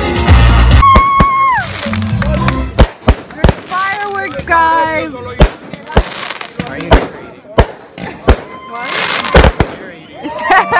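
Dance music with a heavy beat for the first few seconds, then aerial fireworks bursting: a string of about ten sharp bangs at irregular spacing.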